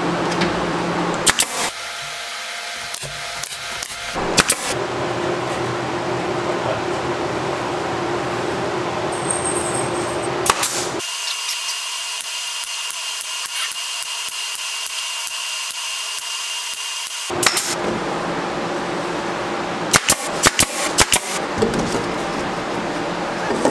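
Workshop power-tool sounds: a pneumatic brad nailer firing sharp single shots into wood, with a quick run of shots near the end, and a cordless drill whining for several seconds midway through.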